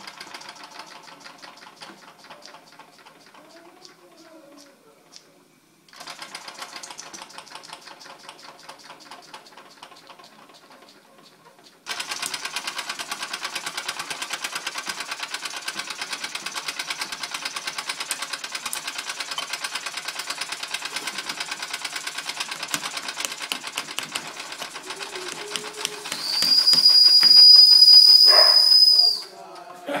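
Antique German toy steam engine running: a rapid, steady mechanical chuffing and clatter from its piston and flywheel, which gets louder about twelve seconds in. Near the end the boiler's steam whistle blows one long, high, steady note for about three seconds, the loudest sound here.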